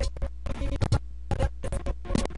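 Electronic music from two virtual DJ decks mixed together, chopped into irregular stuttering bursts with abrupt scratch-like cuts, over a steady low hum.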